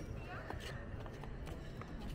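Wind rumbling on the microphone, with a few soft clicks of flip-flop footsteps on a sandy path.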